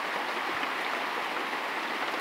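Steady rain falling, an even hiss heard from inside a shack.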